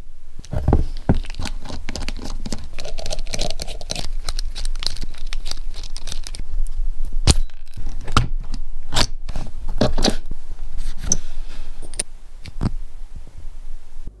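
A small hybrid stepper motor being taken apart by hand: a steady run of sharp metallic clicks and knocks with scraping as the casing, end cap and parts are handled and the toothed steel rotor is drawn out of the housing.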